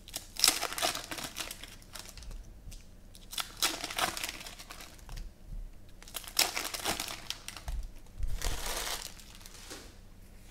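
Foil wrapper of a trading-card pack crinkling and tearing as it is opened and handled, in about four short bursts.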